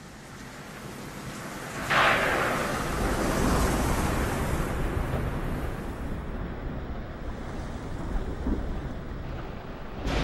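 Thunderstorm: rain and wind noise swelling, then a sharp thunderclap about two seconds in, followed by a long rumble under steady rain.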